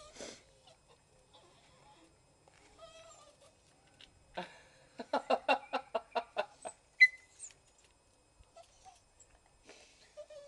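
Small terrier giving a quick run of short, pitched, excited cries for about two seconds, halfway through, followed by a single sharp squeak.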